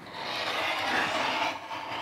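Rotary cutter rolling along the edge of a quilting ruler, slicing through a sewn fabric strip set on a cutting mat. Steady cutting noise with a short break about one and a half seconds in, then it carries on.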